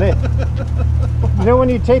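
Motorcycle engines idling with a steady low rumble, under men's voices.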